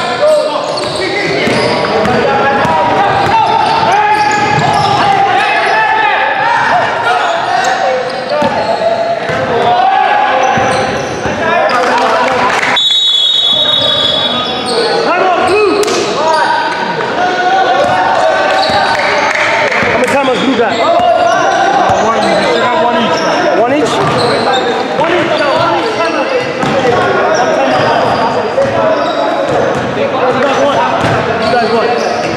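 A basketball bouncing on a hardwood gym floor amid players' and spectators' voices echoing in a large hall. A referee's whistle blows briefly about 13 seconds in.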